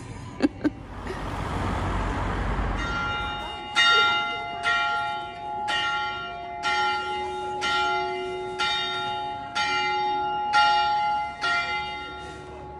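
Church bell ringing steadily, about one stroke a second, each stroke ringing on into the next. It is preceded by a couple of seconds of rushing noise.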